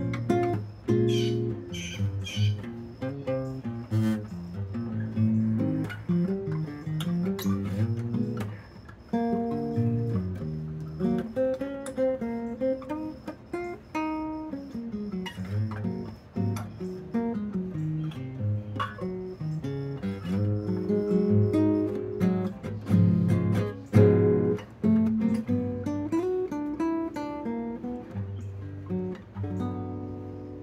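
Solo classical guitar tuned to low A, fingerpicked, with a plucked melody moving over deep bass notes. The last notes ring out and fade near the end.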